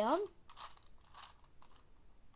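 Plastic gears of a Meffert's Gear Ball puzzle clicking and scraping faintly as its right side is twisted, a few soft rattles over about a second.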